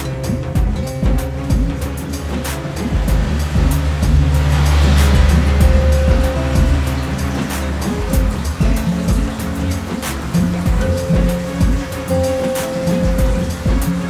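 Background music with a steady beat and sustained bass notes. A swelling rush of noise rises and falls about four to six seconds in.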